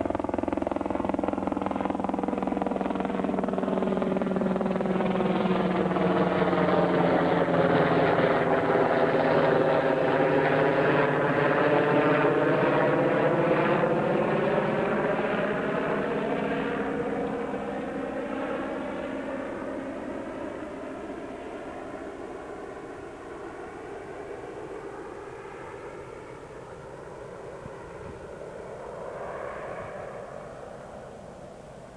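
Aircraft passing overhead, its engine growing louder to a peak about ten seconds in, then slowly fading away. A sweeping, hollow wavering of its tone rises and falls as it goes over.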